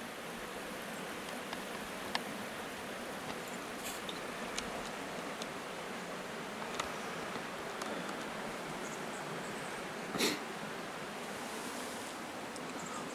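Steady, even background hiss, with a few faint ticks and a short rustle about ten seconds in.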